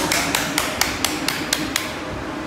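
Hands clapping in a quick, even rhythm, about four claps a second, over a dense hiss.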